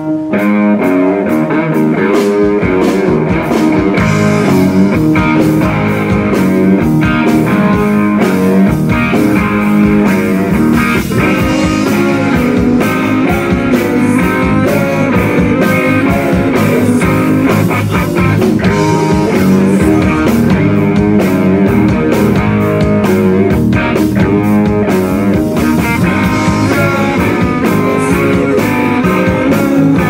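Live rock band playing loud: electric guitar, bass guitar and drum kit, the full band coming in together at the very start with a steady beat.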